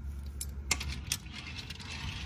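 Small die-cast metal toy cars clicking as they are handled and set down on a glass surface: a few short clicks in the first second or so.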